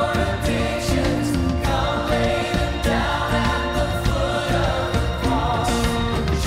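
Worship team of mixed men's and women's voices singing a slow Christian worship song in harmony, backed by a live band.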